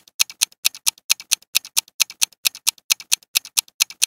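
Countdown timer sound effect ticking rapidly and evenly, about four to five ticks a second, counting down the time left to answer.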